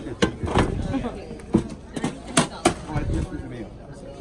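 A handful of sharp knocks and bumps, about five in the first three seconds, under a low murmur of voices.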